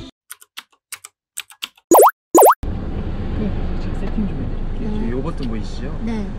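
Video-editing sound effects: a few soft clicks, then two loud, quick rising 'bloop' tones about half a second apart. After that comes steady background noise with voices.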